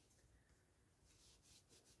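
Near silence, with only faint rubbing of a bone folder pressed along a glued paper fold.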